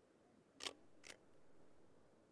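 Camera shutter clicking twice, about half a second apart.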